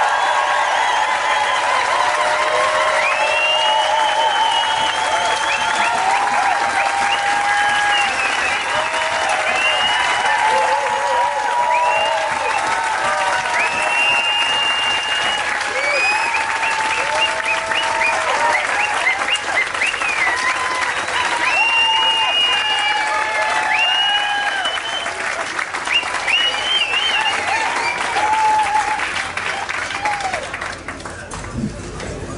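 Large audience giving a standing ovation: sustained loud clapping with voices calling out and cheering over it, easing off slightly near the end.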